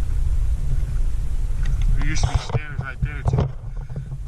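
Wind buffeting an action camera's microphone, a steady low rumble, with a man's voice heard briefly about halfway through.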